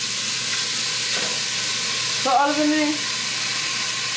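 Steady hiss of something sizzling in a pan on the gas stove.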